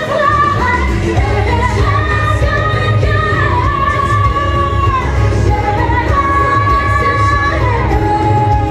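A woman singing a pop song live into a handheld microphone, belting long held notes over backing music with a heavy bass.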